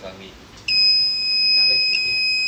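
A continuous high-pitched electronic beep starts a little under a second in and holds steady on one pitch.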